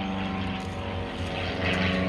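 Steady engine drone, an even low hum that holds level throughout.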